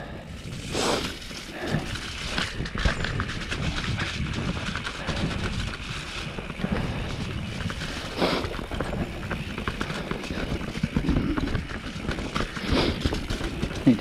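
Mountain bike rolling downhill on a dirt singletrack: steady tyre noise on the dirt, with a running rattle and irregular knocks as the bike goes over roots and bumps.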